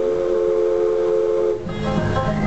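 Multi-chime steam whistle blowing a long, steady chord of three notes that cuts off about one and a half seconds in.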